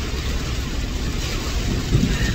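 Steady low road and engine rumble inside the cabin of a moving vehicle, with a short thump near the end.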